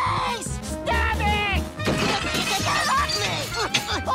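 Plates shattering in a crash about two seconds in, over cartoon background music, with a cartoon voice crying out around it.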